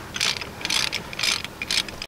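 Socket ratchet wrench clicking in short runs, about two strokes a second, as a 5/8 socket backs off a seat-mounting nut.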